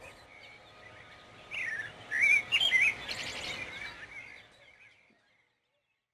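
Small songbirds chirping and warbling over a faint outdoor hiss, with a burst of song in the middle that includes a quick trill of repeated notes; it all fades out about five seconds in.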